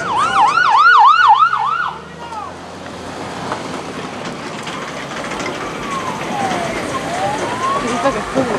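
Ambulance siren: a fast yelp of about three sweeps a second for the first two seconds, then a slow wail falling and rising again over the last few seconds.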